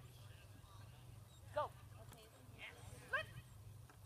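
A dog giving two short, high barks about a second and a half apart, the first falling and the second rising in pitch, over a low steady hum and faint distant voices.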